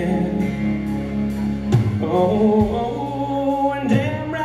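A live country band playing a song, with acoustic and electric guitars, bass, drums and a male vocal. The band changes chord with a louder hit about two seconds in.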